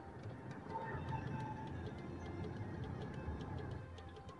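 A pickup truck driving past on a paved road; its engine and tyre rumble is loudest about a second in and then slowly fades.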